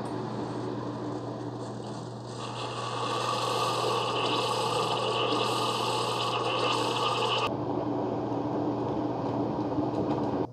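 Keurig K-Café pod coffee maker brewing a six-ounce cup: a steady pump hum with hissing. The sound gets louder about two seconds in, and the higher hiss drops out suddenly about seven and a half seconds in.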